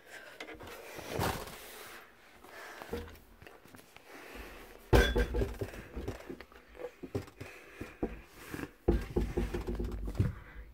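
Bumps, knocks and rustling as someone squeezes into a cupboard to hide, with a hard thump about five seconds in and another near the end.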